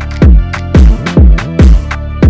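Bronx/NY sample drill instrumental beat: heavy 808 bass notes sliding down in pitch, about four in two seconds, with sharp snare and hi-hat hits over a looped sample.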